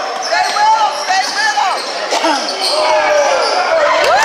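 Basketball shoes squeaking on a hardwood gym court during play: many short high squeaks, rising and falling and overlapping, with voices calling out.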